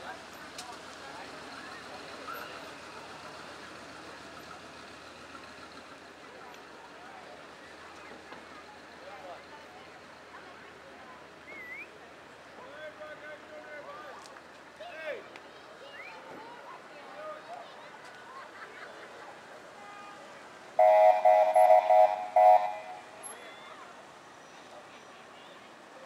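Vehicle horn honking several times in quick succession near the end, over low chatter from onlookers along the street.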